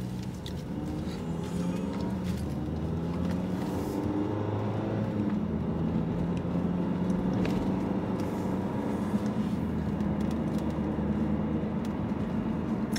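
Car engine and road noise heard from inside the cabin while driving, a steady low hum that drifts slightly up and down in pitch as the speed changes.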